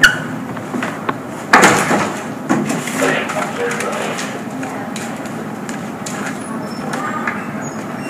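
Knocks and clicks of a hand on a soda vending machine's buttons and front panel: a sharp one right at the start and a few more in the first three seconds, followed by steady background noise.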